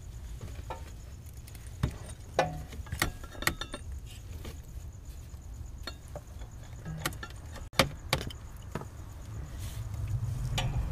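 Scattered metal clinks and taps from a hand tool and a driveshaft bracket being fitted to a car's underside, about nine in all, over a low steady hum.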